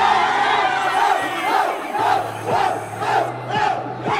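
Rap battle audience shouting and cheering together, many voices at once, in reaction to a punchline.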